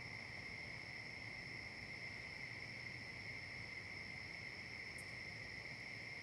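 A faint, steady high-pitched whine made of two constant tones held without change, over a light hiss.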